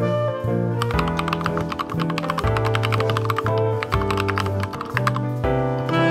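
Fast typing on a computer keyboard, a quick stream of key clicks starting about a second in, over background music.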